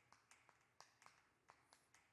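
Faint, short taps and scrapes of chalk on a chalkboard as a word is written, about half a dozen small clicks over two seconds against near silence.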